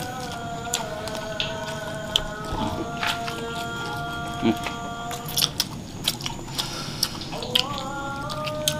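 Close-up eating sounds of people eating rice and salted fish by hand: chewing, lip smacks and many small sharp clicks. Under them runs soft background music of held chords that change about a second in and again near the end.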